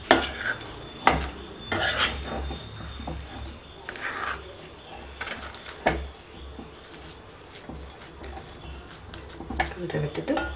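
A metal spoon stirring and scraping thick rava pongal in a metal kadai, with a few sharp clinks of the spoon against the pan, most of them in the first half, over a steady low hum.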